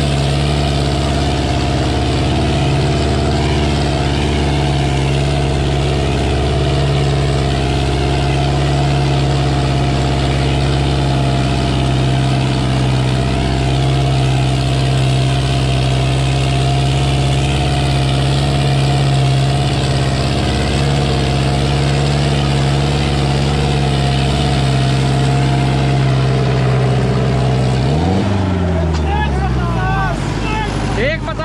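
Sonalika DI-750 III tractor's diesel engine running steadily and loudly under load as it pulls a harrow. About two seconds before the end the engine note dips and climbs back up.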